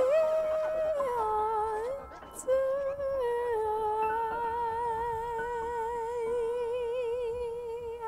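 Wordless humming of a slow melody: the line slides between a few held notes, then holds one long note with a wide, even vibrato, and breaks off abruptly at the end.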